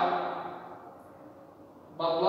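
The tail of a man's spoken word fading out in the first moment, then a quiet room with nothing distinct.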